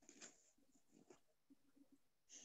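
Near silence: faint room tone with a couple of tiny soft blips.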